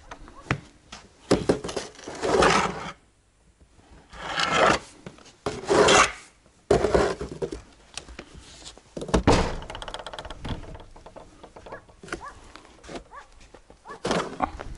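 A snow shovel scraping as it is pushed through fresh snow, in about six separate strokes of roughly a second each.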